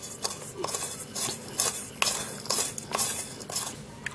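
A metal spoon scraping and tapping against a small bowl as crushed aspirin powder is pressed and ground toward a fine paste, in repeated irregular strokes about twice a second.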